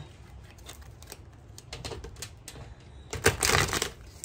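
Tarot cards being handled: a run of light, rapid clicks as cards are thumbed through the deck, with a louder rush of card noise about three seconds in that lasts under a second.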